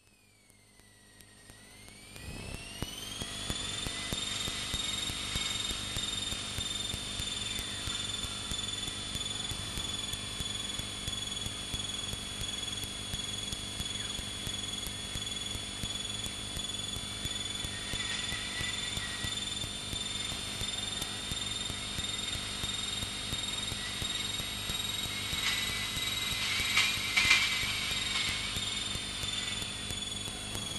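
Piel Emeraude light aircraft's piston engine and propeller running through aerobatic manoeuvres, heard through the cockpit audio feed. It is a steady drone with a high whine that glides up in pitch over the first few seconds and then holds, wavering slightly. It swells briefly a few seconds before the end.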